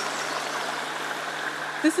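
Steady, even outdoor background hiss with a faint low hum, starting abruptly as the sound cuts in; a voice begins to speak near the end.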